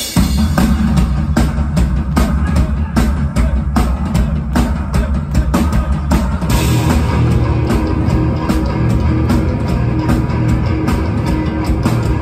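Live rock band playing loudly: drum kit beating about four hits a second under electric guitars and bass guitar. The sound gets fuller and brighter about six and a half seconds in.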